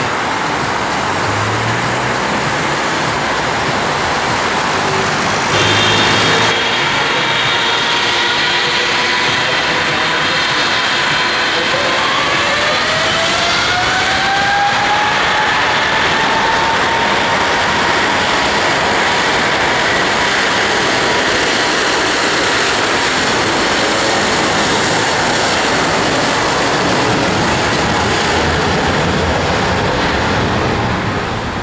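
Boeing 777 GE90 jet engines spooling up for takeoff: a steady jet roar with a whine that climbs in pitch for several seconds partway through, then holds at full takeoff power. In the first seconds, the roar of another 777 lifting off.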